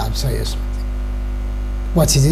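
Steady low electrical mains hum running under the interview audio, with the tail end of a man's speech in the first half second.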